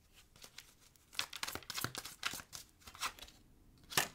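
Tarot cards being shuffled and handled: a rapid run of short, papery clicks and rustles from about a second in, lasting about two seconds.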